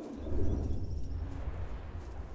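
Birds calling over a steady low rumble: a lower call about half a second in, then a short high trill about a second in.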